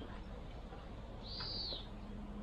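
A bird's single high whistled note, held briefly and then dropping at its end, about a second and a half in, over a steady low background hum. It is one repeat of a call that comes every few seconds.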